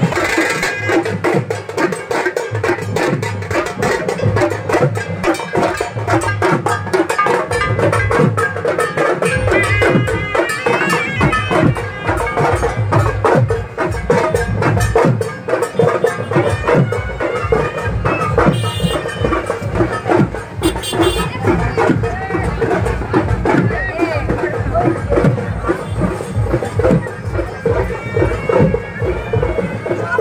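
Procession music: drums beating a fast, steady rhythm under a wind instrument that holds one droning note.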